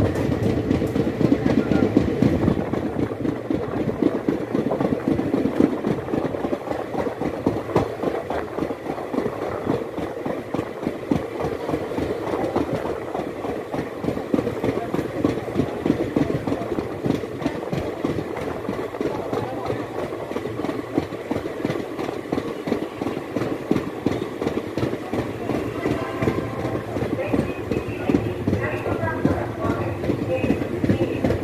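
Passenger train coach running at speed, its wheels clattering over rail joints and points with a continuous rumble, heard from the coach's open doorway.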